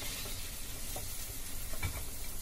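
Raw chicken pieces sizzling in hot oil in a nonstick frying pan as they are tipped in, a steady sizzle with a few faint clicks.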